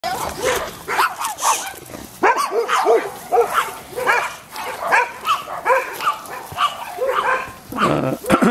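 Dogs barking in a rapid, steady run of short barks, about three a second, with a couple of brief pauses.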